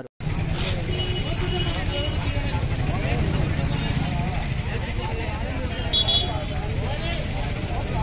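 A vehicle engine running close by, a steady low rumble, under faint voices of people talking in the street. About six seconds in, a short high horn toot.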